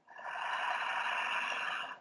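A woman's long, slow breath close to the microphone: a steady hiss lasting nearly two seconds, fading in and out.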